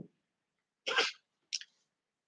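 A short, breathy vocal noise from a man at a headset microphone, heard once about a second in, followed by a faint click.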